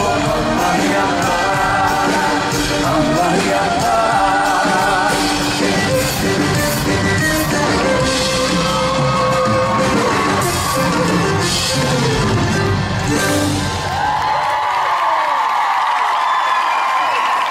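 Live band with drums and bass guitar playing under singing, with shouts from the crowd. The music stops about 14 seconds in and the crowd cheers.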